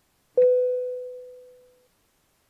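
A single chime-like tone, struck once about half a second in and fading away over about a second and a half.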